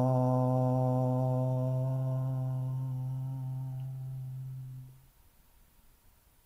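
A man's voice chanting one long Om on a single low, steady pitch, thinning into a hum and fading out about five seconds in.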